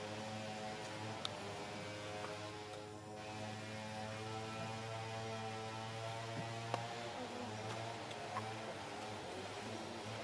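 A steady low hum with a stack of overtones, of the kind an electrical hum or a distant motor makes, with a few faint clicks.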